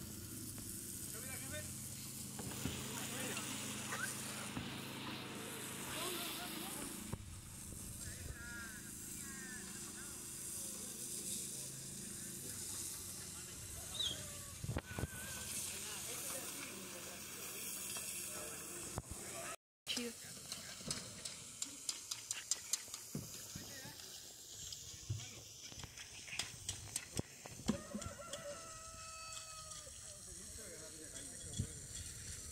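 Building-site sounds during a concrete slab pour: distant workers' voices over a steady low hum in the first few seconds. From about two-thirds of the way in comes a quick run of knocks, clicks and scrapes from shovels, rakes and buckets working the wet concrete.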